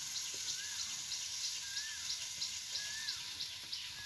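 A bird repeating a short rising-then-falling whistle about once a second, with fainter high chirps about three times a second, over a steady soft hiss.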